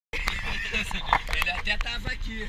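Men's voices inside a moving car's cabin, over a steady low rumble from the car on the road.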